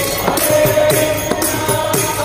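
Namavali bhajan: a lead singer on a microphone chanting divine names with the congregation singing along, over a harmonium and a steady beat of hand-cymbal strikes, about three a second.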